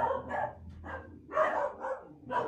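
A dog barking in two short bursts, one at the start and one about a second and a half in, excited while held waiting for a food release cue.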